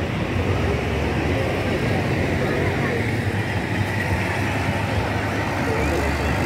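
Military vehicle engines running with a steady low drone as armoured vehicles move slowly past, under the chatter of a crowd.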